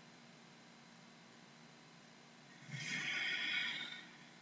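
A person taking one long, breathy sniff through the nose, about a second long near the end, smelling a jar of deep conditioner; quiet room tone before it.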